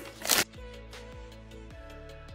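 A short rustle of packing paper being pulled from a cardboard box, then background music with a steady beat.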